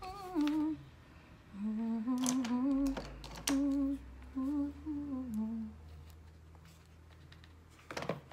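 A woman humming a slow tune to herself: a string of held, wavering notes that stops about six seconds in. A few light clicks are heard along with it.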